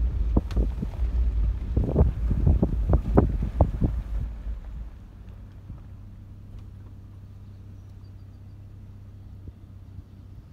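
Vehicle noise heard from inside the cab: a loud low rumble with a quick run of knocks and rattles as the vehicle moves over the road. About four and a half seconds in it drops to a steady, much quieter engine idle hum as the vehicle comes to a stop.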